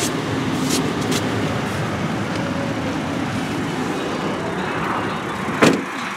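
Steady rushing background noise with a couple of light clicks, then a pickup truck door, a 2013 Ford F-150's, shut with a single sharp thud near the end.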